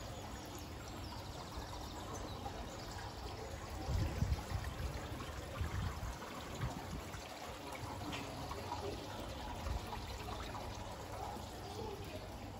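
Water trickling and pouring steadily from a garden water feature. Low rumbling thumps on the microphone come about four to six seconds in.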